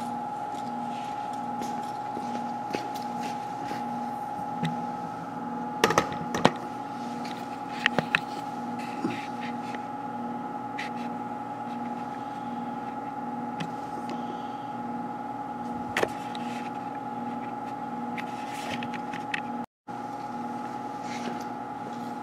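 Steady mechanical hum of workshop background machinery, with a low tone that pulses evenly. A few light clicks and knocks, loudest around a quarter of the way in and again about three-quarters through, as the camera is handled and repositioned.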